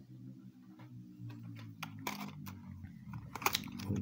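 Light clicks and taps of a clear plastic display box being handled, bunched about halfway through and again near the end, over a steady low hum.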